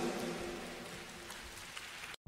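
Live audience applause fading away at the end of a song, an even patter of clapping dying down.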